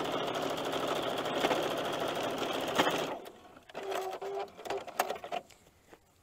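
Electric sewing machine stitching steadily at speed through a paper-pieced stack of fabric strips, stopping abruptly about three seconds in. A few short, quieter machine sounds with a steady hum follow a second later.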